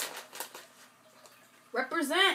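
Small plastic snack pouch crinkling in the hands, a few short crackles in the first half second, then a voiced hum near the end.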